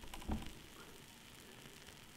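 Quiet room tone, with one faint brief sound about a third of a second in.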